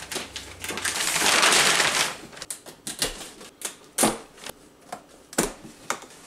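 Plastic shrink wrap and packing straps being cut with a knife and pulled off a cardboard box: a loud rustling tear about a second in, then scattered sharp snaps and knocks of plastic and cardboard.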